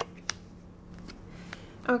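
Lenormand cards being dealt and laid down on a table: a few short card snaps, the sharpest about a third of a second in and another about a second and a half in.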